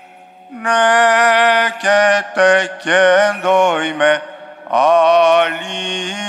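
Orthodox liturgical chant: sung phrases of held notes with melodic turns. It begins about half a second in, after a brief hush, with short breaks between phrases.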